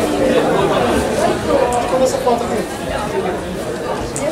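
Many voices talking at once in a large hall: a steady babble of indistinct chatter, with no single voice standing out.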